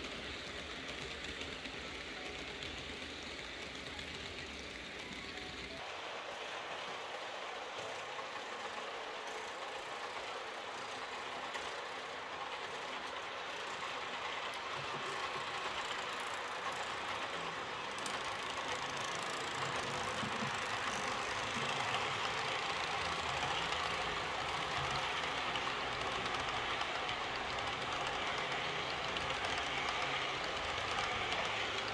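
Model IC train, hauled by a model DB class 111 locomotive, running along the layout's track with a steady rolling rumble of wheels on rails. It grows louder in the second half as the coaches pass close by.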